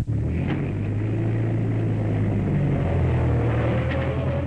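Vintage farm tractor's engine running with a steady low drone, shifting slightly in pitch as it drives past.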